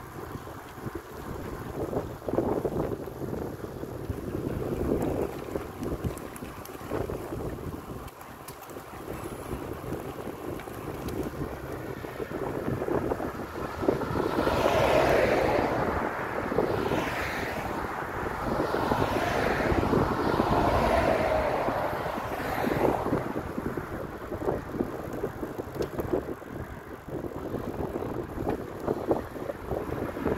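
Wind rushing over the microphone of a camera on a moving bicycle, with uneven gusts. From about halfway through, cars pass on the road alongside, their tyre and engine noise swelling and fading over several seconds.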